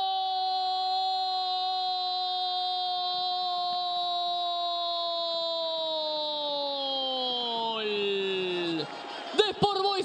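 A Spanish-language football commentator's long drawn-out goal cry, 'goooool', held on one steady note for about nine seconds. Its pitch sinks over the last couple of seconds as his breath runs out, and it stops about nine seconds in.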